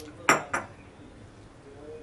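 A china teacup being set down on its saucer: two sharp clinks about a quarter second apart, the first louder, each with a brief ring.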